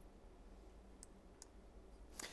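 Near silence: room tone, with two faint clicks about a second and a second and a half in.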